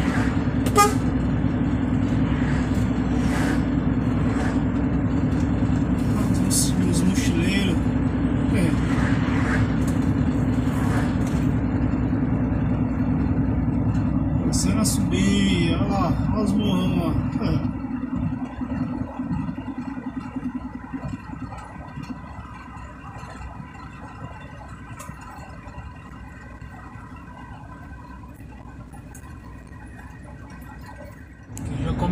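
Heavy truck's engine droning steadily as heard from inside the cab while driving on the highway, then dropping sharply in loudness about eighteen seconds in as the engine eases off.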